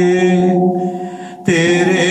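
A man's voice singing an Urdu naat, holding one long steady note that fades out about a second and a half in, then starting the next line with a rising bend.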